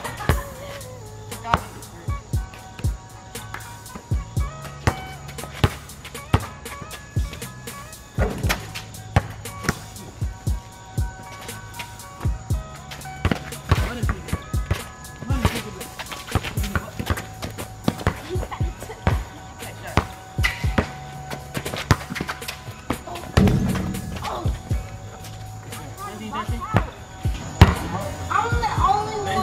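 A basketball bouncing on a concrete court, an irregular run of sharp bounces as it is dribbled and fought over, under background music with a steady beat.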